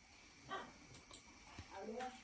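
Quiet room tone with a couple of faint small sounds and a faint, brief murmured voice near the end.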